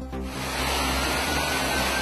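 A steady rush of flowing water, with music playing underneath.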